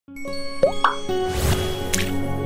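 Channel intro sting: held music notes with cartoon pop sound effects. Two quick rising pops come in the first second, then a rushing whoosh, and a sharp bright click near the end.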